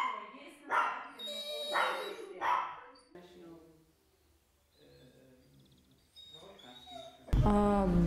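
A dog calling out in a few short, high-pitched cries within the first three seconds, then quiet.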